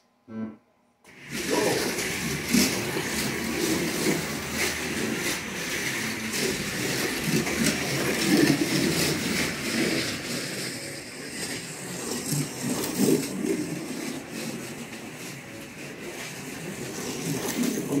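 A short pitched tone, then about a second in several Slot.it Group C / IMSA GTP slot cars start racing at once. Their motors and pickup braids on the copper-tape rails make a dense, continuous whirring rush that swells and eases as the cars come past, with frequent small clicks.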